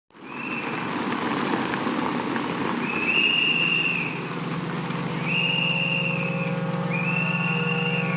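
Long, steady whistle blasts repeated about every two seconds, four in all, over the rumble of car tyres on cobblestones; a steady low drone joins about three seconds in.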